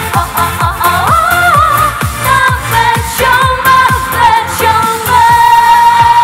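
Female voices singing a Vietnamese pop song live over a dance-pop backing track with a steady beat; a long held note comes in near the end.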